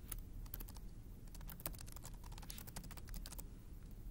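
Computer keyboard typing: a quick, irregular run of faint key clicks that stops shortly before the end, over a low steady hum.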